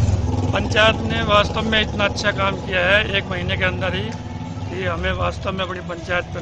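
A man talking, with a motor vehicle's engine running underneath as a low rumble that is loudest right at the start and then dies down.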